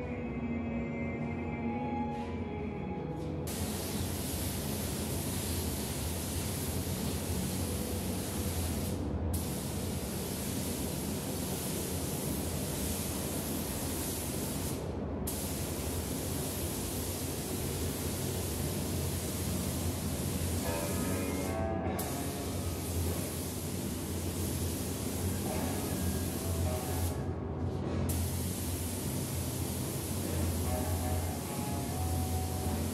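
Gravity-feed spray gun hissing steadily as it atomizes epoxy primer, starting about three and a half seconds in, with four brief breaks where the trigger is let off between passes. Background music plays underneath.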